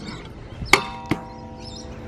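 A stunt scooter hitting a steel flat-bar rail during a 270 lipslide: a sharp metallic clank about three-quarters of a second in leaves the rail ringing with a steady, bell-like tone, and a second, lighter knock follows a moment later.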